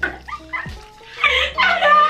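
Two women laughing hard, with high squealing laughter that grows loudest about halfway through, over quiet background music.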